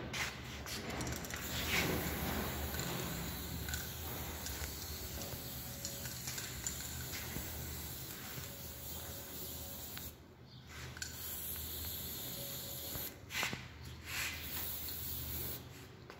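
Aerosol spray paint can spraying a bicycle frame: a long steady hiss, a short pause about two-thirds of the way through, then shorter spurts of hiss with brief breaks between them.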